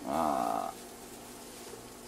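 A man's drawn-out hesitation sound ("ehh"), falling in pitch, for about the first second, then quiet room tone.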